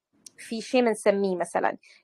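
Only speech: a voice talking, starting about a third of a second in.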